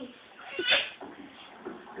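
A child's brief high-pitched cry about two-thirds of a second in, during a play fight, followed by fainter voice sounds.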